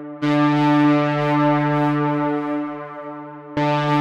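Sustained synthesizer chord from a trap instrumental beat. It is struck about a quarter second in and again near the end, and each time it rings and slowly fades.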